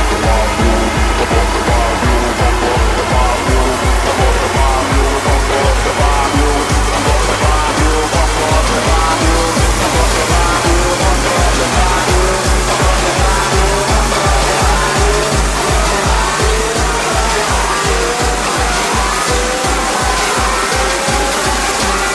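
Hardcore electronic dance music from a DJ mix: a fast, steady distorted kick drum under a synth lead melody.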